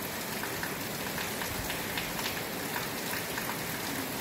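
Steady rain falling: an even hiss with faint scattered drop taps.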